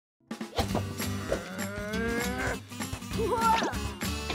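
A cartoon character's long, drawn-out nonverbal groans, sliding up and wavering in pitch, over light background music.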